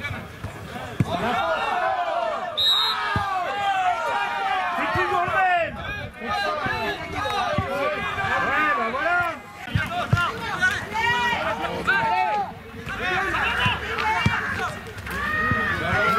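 Many voices shouting and calling over one another, players and spectators at a football match, with a few thuds of the ball being kicked in the first few seconds. A short, high referee's whistle blast sounds about two and a half seconds in.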